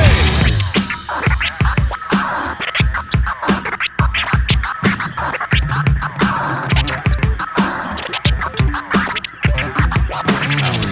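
DJ scratching a vinyl record on a turntable: quick back-and-forth cuts, the pitch sweeping up and down with each stroke, over a drum beat.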